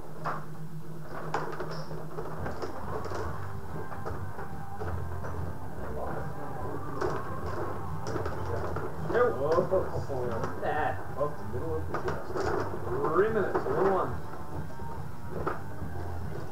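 Indistinct background voices over a low steady hum, with a few light scattered clicks from a rod hockey table's rods and puck during play.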